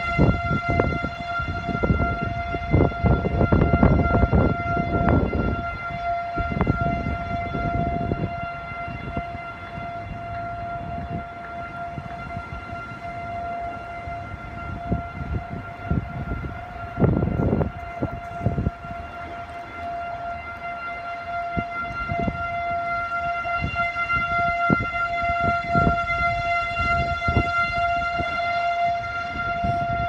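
Rooftop outdoor warning siren sounding a tornado/air-raid test as one steady, unwavering tone at constant pitch. Irregular low rumbles come and go beneath it, heaviest near the start and about two-thirds of the way through.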